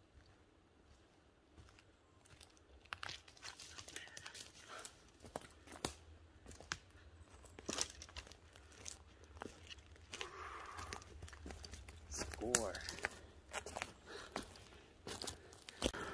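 Footsteps crunching and snapping on a dry forest floor of pine needles and twigs, irregular, starting about three seconds in. A man's voice says a word near the end.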